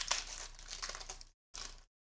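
A foil trading-card pack, a Panini Prizm Fast Break basketball pack, being torn open and crinkled by hand: a sharp rip right at the start that settles into crinkling for over a second, then a second short crinkle near the end.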